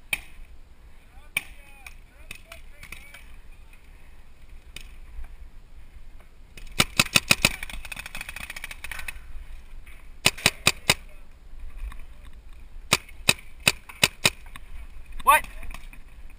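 Paintball markers firing in rapid strings of several shots, first about seven seconds in and then three more times, over a low rumble of wind on the microphone.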